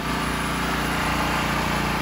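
A 5000-watt portable gasoline generator's small single-cylinder engine running steadily after starting, an even hum metered at 68 decibels.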